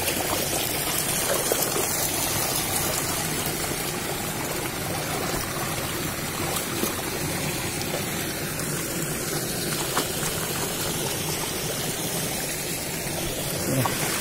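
Shallow stream water running steadily down a narrow channel, splashing over stones.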